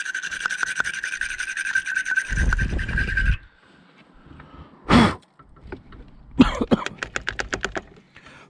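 Wire brush of a battery terminal cleaner twisted inside a battery cable clamp, scouring the corrosion off: a steady scraping squeal for about three seconds, then a short knock and a rapid run of scratchy clicks near the end.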